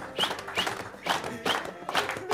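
A group of people clapping hands in time, about two claps a second, over faint electronic keyboard music.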